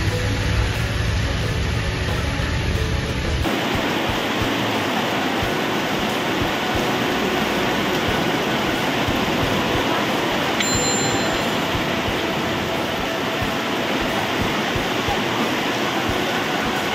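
Heavy rain pouring down, a steady dense hiss. For about the first three and a half seconds a low rumble runs under it, then it stops abruptly and the rain continues alone.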